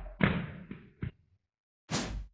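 A few dull thuds and knocks from a hand slapping a plastic water bottle, played back slowed down so they sound deep and muffled, followed near the end by a short hiss.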